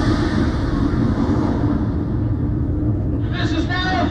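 A loud, deep rumble of a played-back explosion, its hissing top fading away over about three seconds while the low rumble carries on. A voice comes in near the end.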